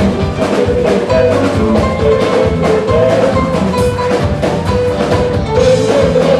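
Live samba-reggae band playing an instrumental passage: hand drums and drum kit keep a dense, busy beat under electric bass, guitar and a wandering melodic line.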